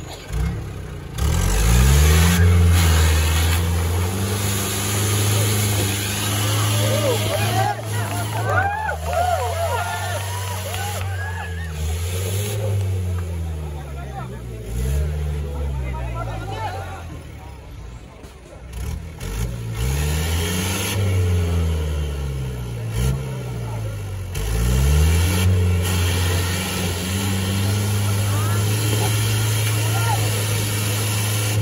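Mahindra CL550 MDI jeep's diesel engine revving up and dropping back again and again as the jeep claws its way up a muddy slope under load. Spectators' voices and shouts come through about a third of the way in.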